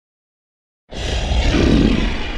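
Dead silence for about the first second, then a loud monster roar that starts abruptly and carries on, with a deep rumble under it: the green ghost Slimer roaring.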